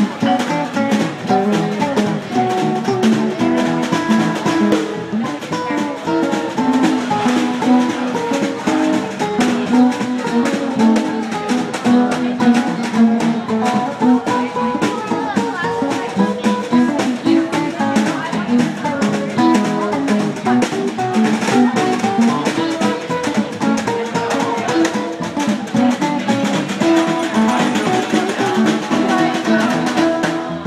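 A live blues jam: guitars playing over a drum kit keeping time, with cymbals.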